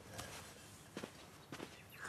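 A few faint, soft knocks over quiet room tone, about a second in and again half a second later.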